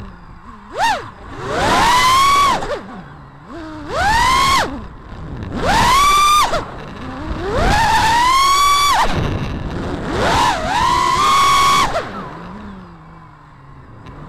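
FPV quadcopter's brushless motors and propellers whining through throttle punches, recorded by the onboard Xiaomi Yi action camera fitted with a replacement electret microphone. There are five main bursts: the pitch climbs quickly, holds high, then drops back to a low idle whine between them.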